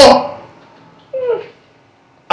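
A single short vocal call about a second in, falling in pitch and lasting under half a second, after a man's speech trails off.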